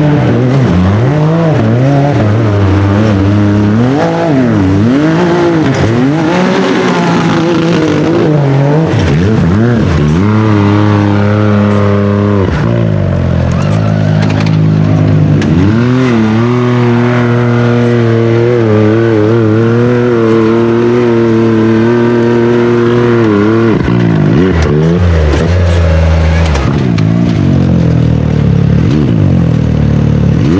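A hill-climb race UTV's engine revving hard, over and over: the pitch climbs and drops in quick swings, and is held high for several seconds at a time while the wheels spin on a climb it fails to finish.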